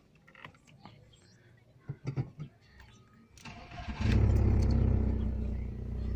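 A few small clicks, then a 2002 SEAT Ibiza's engine is started: the starter turns it over about three and a half seconds in, it catches at about four seconds, runs up briefly and settles into a steady idle.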